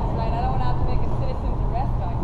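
Steady low rumble with a constant low hum, and faint voices in the background.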